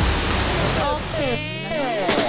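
Steady rushing splash of a plaza water fountain, then, about a second in, electronic tones sweeping down and up as edited background music comes in.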